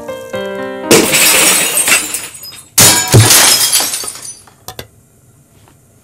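Glass shattering twice: a loud crash about a second in, then a second crash near three seconds in, each with a glittering tail of falling pieces.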